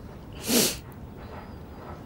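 A single short, sharp breathy sound from a person's voice, about half a second in, over a low steady background.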